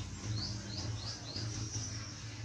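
A small bird chirping: a quick run of short high notes, about three a second, ending in a longer note, over a low steady hum.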